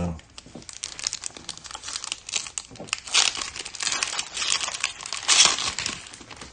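Foil trading-card pack wrapper being torn open and crinkled by hand: a run of crackling, with louder bursts about three seconds in and again near the end.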